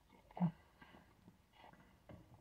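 Mostly quiet, with one short gulp about half a second in as a man swallows a mouthful of soda from a can.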